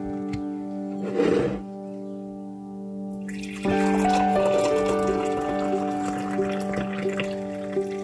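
Tea being poured from a glass tea-maker jug into a ceramic mug, a steady splashing pour that starts about three seconds in. There is a brief noise about a second in, and gentle keyboard music plays throughout.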